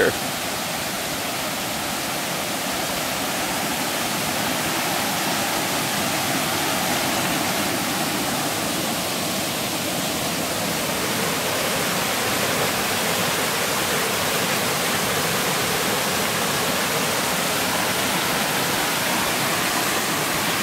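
Steady rushing roar of a waterfall, creek water pouring over stepped sandstone ledges into a pool.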